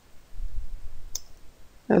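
A soft low thump about half a second in, then a single sharp click of a computer keyboard key a little past a second.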